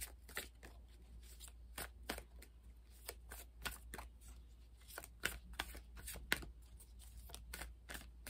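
A deck of tarot cards being shuffled by hand: a run of soft, irregular card flicks and clicks, a few of them sharper in the second half.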